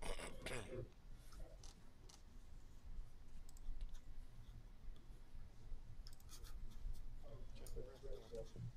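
Faint open-microphone background on a video call: a few light clicks scattered through, with a brief murmured voice in the first second and again near the end.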